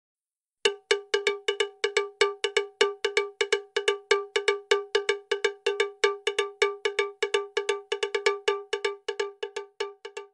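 Intro sound effect: a fast, steady run of short, cowbell-like metallic strikes on one pitch, about five a second, starting about half a second in.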